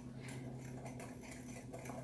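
Wire whisk stirring dry flour, baking powder and salt in a glass measuring cup: faint, quick light ticks of the wires against the glass.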